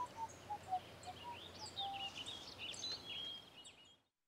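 Songbirds chirping and singing over quiet woodland ambience, a scatter of short whistled notes, some low and many high and gliding. It fades out just before the end.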